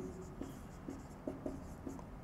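Marker pen writing on a whiteboard: several short, faint strokes as letters are written.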